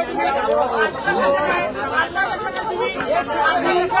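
Speech: a man talking, with other voices chattering around him.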